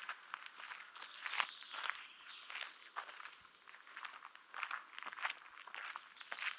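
Footsteps of a person walking at a steady pace on a dirt track, a series of short scuffing steps.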